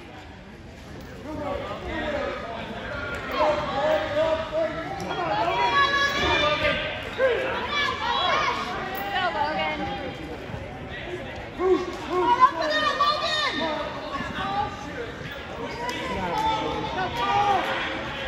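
Spectators and coaches shouting and calling out across a gym, several voices overlapping with hall echo, growing louder about a second and a half in as one wrestler takes the other down.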